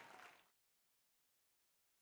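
Audience applause fading out within the first half second, then complete silence.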